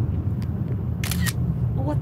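Steady low rumble of a car's engine and road noise heard from inside the cabin while driving, with a short hiss about a second in.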